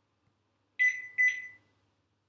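Two quick electronic chime notes of the same high pitch, about half a second apart, each starting sharply and dying away: a notification chime.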